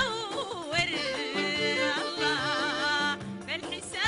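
A woman singing a Sudanese song with instrumental accompaniment, her held notes ornamented with a quick wavering of pitch.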